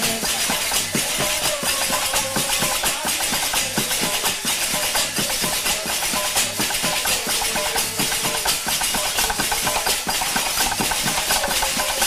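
Several large metal hand cymbals clashed together over and over in a fast, steady rhythm, making a continuous metallic shimmer.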